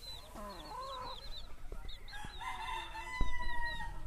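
Chicks peep over and over throughout. About half a second in a hen gives a short call. From about two seconds in a rooster crows, ending in one long held note, and a few sharp knocks fall in the middle, the loudest a little after three seconds.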